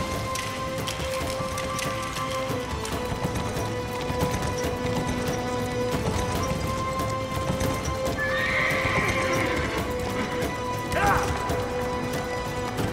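A group of horses galloping, with continuous overlapping hoofbeats, under a dramatic music score of long held notes. Near the end a horse gives a short falling whinny.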